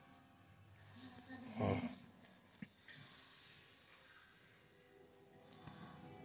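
Quiet room with a child's soft breath sounds, a short voiced "oh" about a second and a half in, and one small sharp click about a second later.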